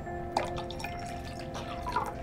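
Water poured from a pitcher into a glass, with irregular splashes and gurgles starting about a third of a second in, over sustained background music.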